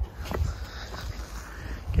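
Outdoor background noise with wind rumbling on a phone microphone, and a single soft tap about a third of a second in.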